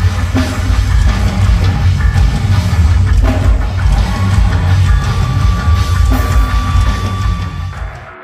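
Heavy metal band playing live, with a pounding drum kit and heavy low end under held guitar tones, fading out in the last second.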